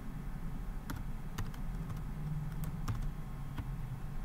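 Typing on a computer keyboard: several separate key clicks at an irregular pace, over a low steady hum.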